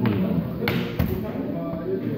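A chess piece set down on the board and the chess clock pressed during a fast game: two sharp knocks about a third of a second apart near the middle, over background talk.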